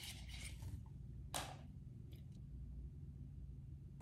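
Faint handling of a small product box as an eyeliner is taken out of its packaging, with light clicks and one brief scrape about a second and a half in.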